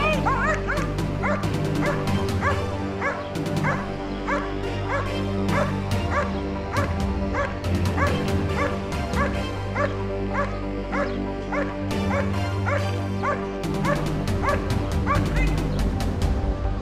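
German shepherd barking steadily at a helper holding a bite sleeve, about two barks a second, in the guard (bark-and-hold) phase of protection work.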